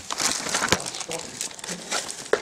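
Rustling and handling noise, with a single sharp click about three-quarters of a second in.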